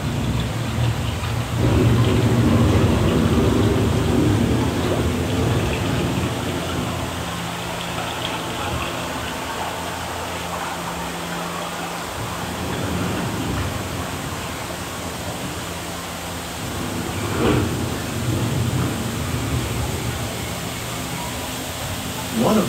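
Recorded thunderstorm sound effect, rain hissing under low rumbles of thunder, heaviest a couple of seconds in. A low steady tone runs through the middle and fades, and there is a short louder rumble near the end.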